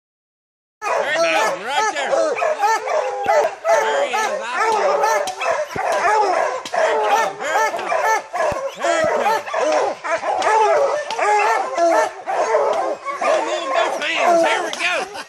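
A pack of bear hounds baying treed, many voices overlapping without a break: the sign that the bear is up the tree. It starts suddenly about a second in.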